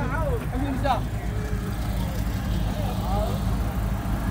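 Fishing boat's engine running steadily with an even low drone, with a few short shouted words over it.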